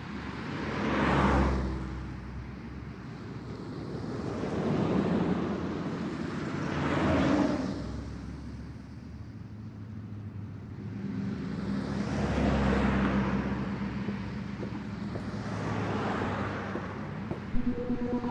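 Street ambience of cars passing one after another: about four swells of tyre and engine noise that rise and fade a few seconds apart, over a low steady hum.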